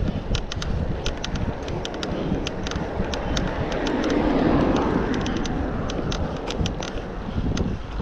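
Wind rushing over the microphone of a moving bicycle, with a car passing close by that swells and fades about four to five seconds in. Sharp clicks and ticks keep breaking through the rush.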